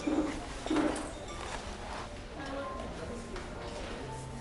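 Soft background music over restaurant chatter, with two short low vocal sounds in the first second.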